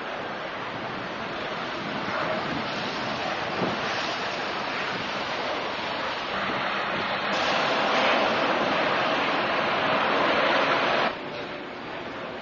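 Steady rushing noise, growing louder about six seconds in and cutting off suddenly about a second before the end.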